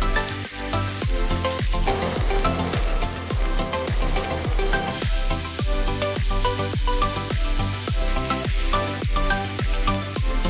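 Chopped onion sizzling and frying in hot oil in a pan, the sizzle filling out as more onion goes in. A background music track with a steady beat plays over it.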